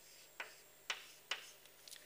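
Chalk striking and scraping on a blackboard while a curve is drawn: three sharp ticks about half a second apart, then a fainter one near the end.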